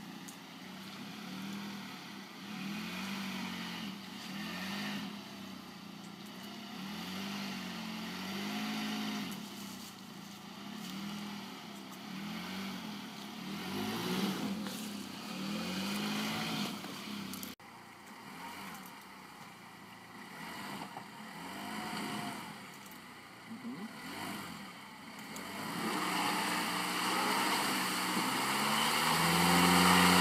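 Nissan X-Trail crossover's engine revving up and down over and over as it pulls through deep mud, its near-slick tyres slipping; the revving grows louder and is held higher near the end.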